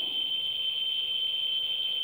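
Ludlum Model 14C Geiger counter's speaker sounding a steady high-pitched tone. The counts from an americium-241 alpha source held just under the end-window probe come so fast that the clicks run together, and the meter is pinned past full scale on the ×1 range.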